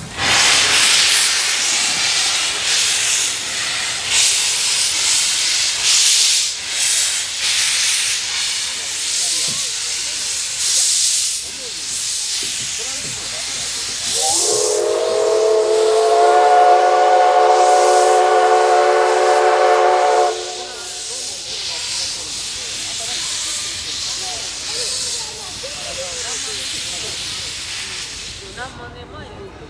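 JNR Class C56 steam locomotive (C56 160) moving slowly with its cylinder drain cocks open, steam blowing out in repeated loud bursts of hissing. About halfway through, its steam whistle gives one long steady blast of several tones lasting about six seconds, after which the steam hiss carries on more softly.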